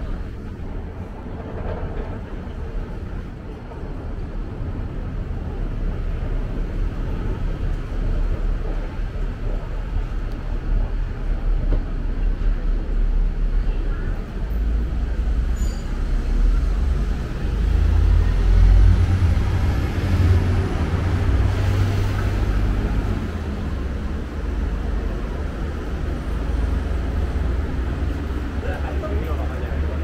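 Steady low rumble of road traffic, swelling for several seconds past the middle as heavier vehicles pass.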